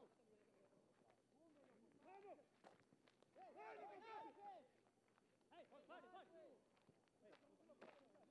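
Faint, distant shouting of football players on the pitch: several calls rising and falling in pitch, the longest about halfway through. A few sharp knocks sound between them.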